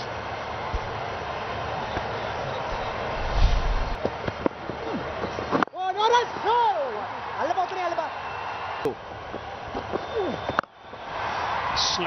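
Cricket ground broadcast sound: a steady background hiss with a short, dull low thump about three and a half seconds in. After a cut, voices call out for about five seconds.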